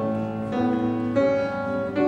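Grand piano playing a slow piece, with a new chord struck three or four times.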